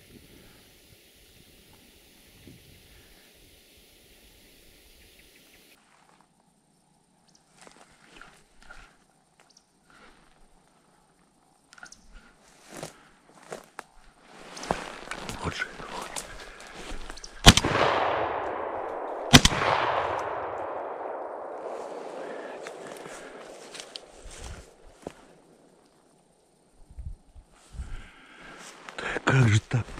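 Two shotgun shots about two seconds apart, each followed by a long rolling echo that fades over several seconds, fired at a woodcock passing overhead and missing it. Rustling handling noise comes before the shots as the gun is swung up.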